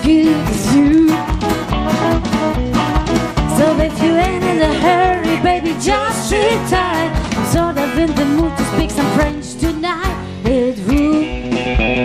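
Live band music: a woman singing into a microphone over electric bass, guitar and drum kit, with a steady beat.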